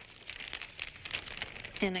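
Thin plastic bag crinkling as it is handled and shaken to empty cocoa powder into a stainless steel mixing bowl, a steady run of small crackles.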